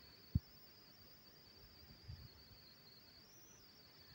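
Quiet stirring of crumbly semolina and butter with a silicone spatula in a plastic bowl: one brief dull bump early on and a few soft low knocks about two seconds in, over a steady faint high-pitched whine.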